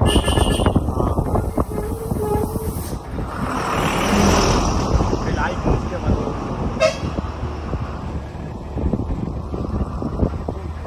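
Car driving along a winding hill road, with steady engine and road rumble and a short horn toot about seven seconds in.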